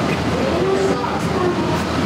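Steady rumbling background noise with indistinct voices: the ambient sound of a large concrete hall.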